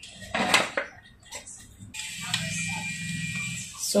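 Handling noise from a folding camping table being assembled: a sharp clatter of the slatted tabletop against its metal leg frame about half a second in, then a few light knocks. In the second half there is a steady noise.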